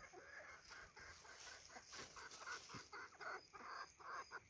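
Faint, soft clucking of a flock of chickens foraging: a run of short clucks repeated throughout.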